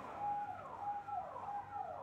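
A bird calling faintly: a few short whistled notes, each held and then falling in pitch, about half a second apart.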